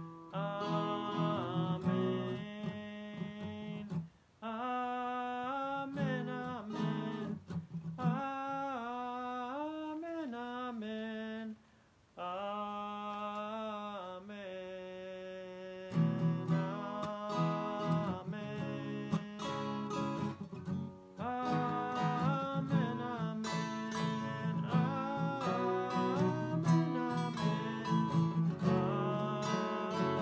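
Acoustic guitar strummed with a man's voice singing a melody over it, pausing briefly twice, about four and twelve seconds in.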